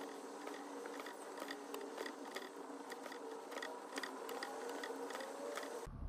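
Faint soft ticks, about two to three a second, with a light rustle: needles and thread being worked through cross-stitch fabric.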